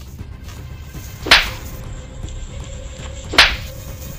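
Two punch sound effects, sharp whip-like hits about two seconds apart, over low background music.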